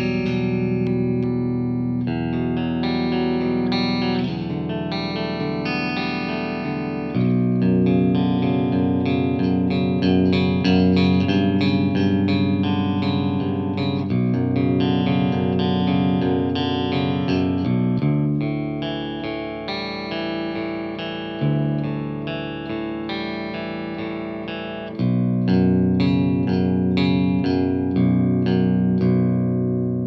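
Jackson Pro Plus Dinky seven-string electric guitar with Fishman Fluence pickups, played clean through a Marshall JVM410H amp: ringing chords and picked arpeggios, with a new chord struck every few seconds. The last chord dies away at the end.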